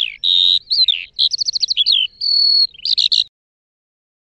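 Songbird singing a rapid, varied phrase of clear whistles, chirps and a short trill of about six quick notes, cutting off abruptly a little over three seconds in.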